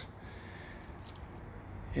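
Faint steady background noise with no distinct event.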